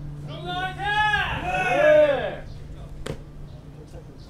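A man's voice giving several loud shouted calls in quick succession, each sweeping up and down in pitch, for about two seconds: the rhythmic cries that taekkyon players make while they move in a bout. A single sharp smack follows about three seconds in.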